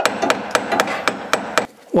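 A hammer striking a metal drift about eight times in quick succession, trying to drive a seized part out of a 1969 Morris Mini's bulkhead. The blows stop shortly before the end. The part is well and truly rusted in place.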